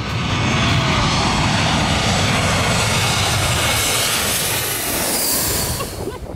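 Twin-engine jet airliner flying low on its landing approach, its engines giving a loud, steady noise that drops away at the end.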